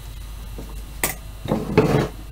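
Handling noise from work on an opened cassette deck: a sharp click about a second in, then a cluster of louder knocks near the end, over a steady low hum.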